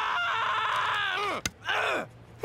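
A man's long, held scream in an animated character's voice, broken by a sharp click about a second and a half in, then a second, shorter cry that falls in pitch.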